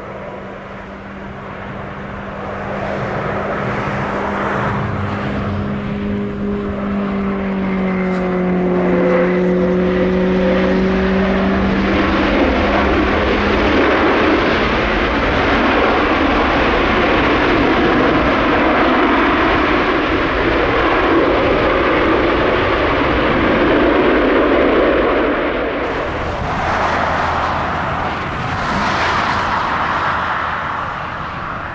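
Airbus A330 jet engines after touchdown: the engine noise swells over the first few seconds and stays loud through the rollout, with an engine hum that drops in pitch a little way in. Near the end, after a cut, another A330's Rolls-Royce Trent engines are heard on the runway.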